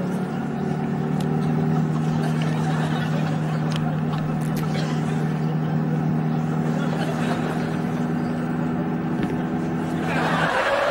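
Classic Mini's small four-cylinder engine running at a steady speed, heard from inside the cabin as an even, unchanging hum, with a few faint clicks over it.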